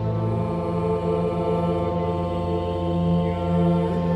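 Pipe organ accompanying a small group of singers in a liturgical hymn, with long held notes. A low bass note drops out about half a second in, and the chord changes near the end.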